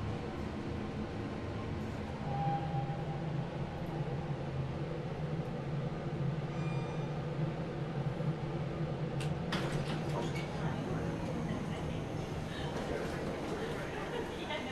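Otis high-speed traction elevator car running with a steady low hum as it slows to a stop, then a few clicks and a rattle about nine and a half seconds in.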